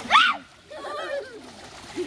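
Water splashing as people move and scoop water in a shallow river, with a short high cry at the start and quieter voices after it.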